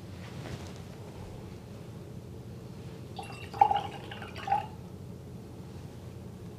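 Watercolour paintbrush sloshed in a water jar: a short bout of splashing and dripping about three seconds in, with two sharper peaks, over a steady low background hum.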